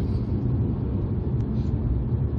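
In-cabin driving noise of a 2009 Mazda RX-8 R3 on the move: a steady low rumble of road and Wankel rotary engine noise at an even cruise, with no change in speed.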